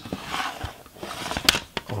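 Clear plastic double-CD jewel case being handled: a soft scraping of plastic under the fingers, then a sharp click about one and a half seconds in as the hinged inner disc tray is moved.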